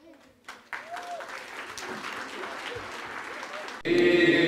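Audience applause starting about half a second in and cut off abruptly just before the end.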